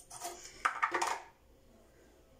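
A few brief clicks and scrapes as a plastic face-cream jar and its lid are handled, in about the first second, followed by quiet room tone.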